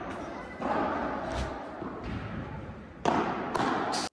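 Padel rally: ball hits and bounces on the court and walls, thudding and echoing in a large indoor hall, with a louder burst of hits about half a second in and again near the end.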